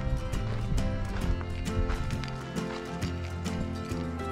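Background music with a steady beat and sustained notes.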